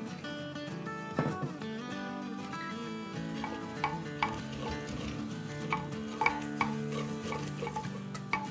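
Wooden spoon stirring and scraping spices frying in oil in a clay pot, with a light sizzle, under soft background music. The spoon knocks against the pot several times in the second half.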